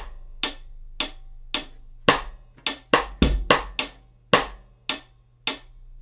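A drum kit plays a steady looped groove: UFIP hi-hat in even eighth notes, about two a second, with bass drum and a backbeat snare. Extra snare hits are syncopated on the second sixteenth of beat one and the fourth sixteenth of beat four, so across the loop those two notes run together.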